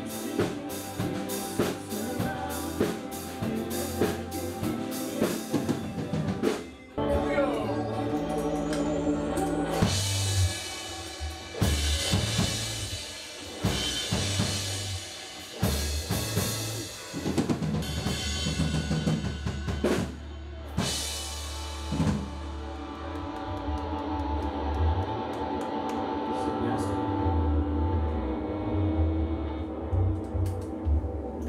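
A rock band playing together: drum kit, electric guitars, electric bass and keyboard. The drums keep a steady beat at first, break off briefly, then the full band comes back in with cymbals; after about twenty seconds the drums mostly drop out, leaving held chords over the bass.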